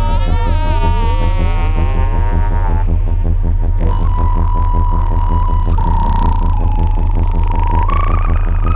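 Synthesizer samples through a Synton Fenix 2 phaser that is being modulated in feedback mode: a steady, throbbing low drone under whistling overtones that sweep up and down during the first three seconds. In the second half a high held tone shifts pitch in a few steps.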